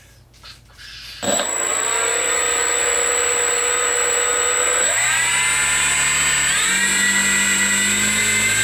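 Electric motor and propeller of a foam RC airplane starting up about a second in and running steadily, with a high whine over it. Its pitch steps up twice, about five and seven seconds in, as the throttle is raised. The motor is the load drawing current, up to about 5 A, through a fuse under test that does not blow.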